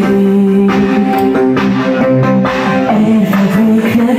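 Loud live band music with guitar, steady and without a break.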